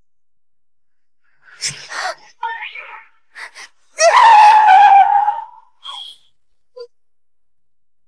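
A woman's short gasps, then a loud, long cry about four seconds in that falls a little in pitch, as she is struck by a car.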